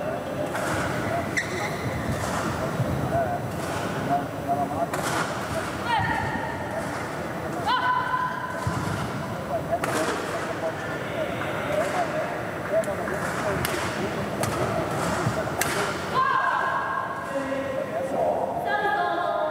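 Badminton hall during a break in play: indistinct voices, a few sharp racket hits and short shoe squeaks from matches on nearby courts.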